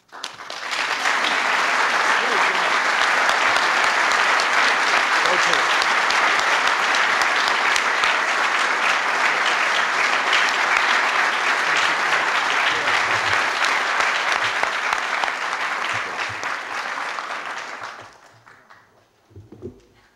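Audience applauding: steady clapping that begins about half a second in and dies away near the end.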